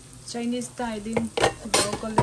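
A glass pot lid with a steel rim clinks against the metal rim of the frying pan as it is handled and set back on, with a few sharp clinks about halfway through and near the end. Short hummed voice notes are heard alongside.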